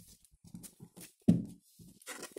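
A tarot deck being squared and cut by hand on a cloth-covered table: a series of soft taps and card rustles, with one louder low thump a little past the middle.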